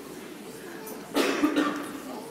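Low murmur of a congregation talking quietly, cut across about a second in by one loud, short cough.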